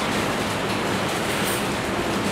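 Steady rushing background noise with a faint low hum underneath.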